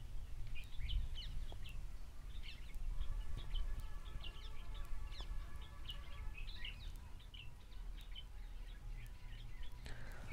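Birds chirping in the background, many short high calls scattered throughout, over a low room rumble; a faint steady multi-pitched hum joins from about three seconds in to past six seconds.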